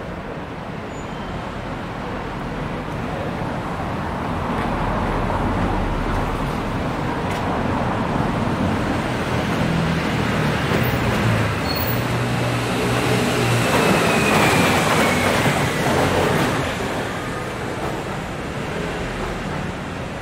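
Road traffic passing close by: an even rushing noise with a low engine hum that swells slowly, is loudest about three-quarters of the way through as a vehicle goes past, then fades.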